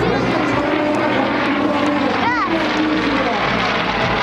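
Two Yak-52 aerobatic trainers flying overhead in formation, their nine-cylinder M-14P radial engines and propellers making a steady drone.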